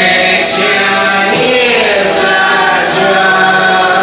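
Several voices singing together in held notes over musical accompaniment: a chorus number from a stage musical.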